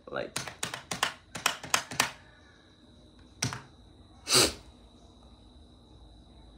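Close-up handling noise: a quick run of about ten light taps and clicks in the first two seconds, then a single tap, and about four seconds in a short, louder hiss-like noise.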